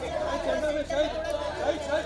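Overlapping chatter of several voices at once, the calling-out of press photographers at a red-carpet photo call, over a steady low hum.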